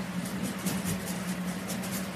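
A steady low machine hum, with faint irregular high clicks over it.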